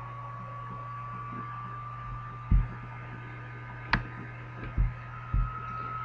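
A steady low electrical hum with a faint high whine under it. In the second half come four short thumps, one of them a sharp click: keys struck on a computer keyboard as the input values are typed in.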